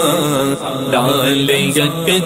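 Devotional vocal music: a manqabat sung as a chant, with several voices holding and bending pitches together between the lead's sung lines.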